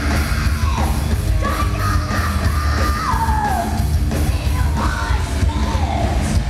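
Heavy metal band playing live: a female lead vocalist sings long held notes that slide downward in pitch, over distorted electric guitars, bass and drums.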